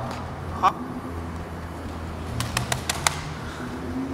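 A quick run of about six sharp clicks in under a second, past the middle, over a steady low hum, after a woman's brief spoken 'Huh?'.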